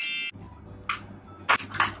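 A short, bright chime sound effect that ends just after the start, followed by a low steady hum with a few faint, brief noises.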